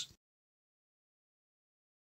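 Silence: a word of speech cuts off just after the start, then the sound track is completely silent.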